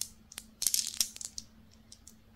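Light plastic clicks and rattling from a handheld plastic toy with coloured balls. A short burst of crisp rustling and clicks comes in the first half, and it is quieter near the end.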